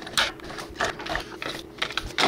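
AA batteries being pushed one after another into a trail camera's plastic battery compartment against its spring contacts, giving a quick series of short clicks and clacks.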